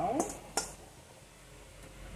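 Cooked spaghetti tipped from a metal colander into a pan, with one sharp knock of the utensils against the pan about half a second in. A woman's voice is finishing a sentence at the start.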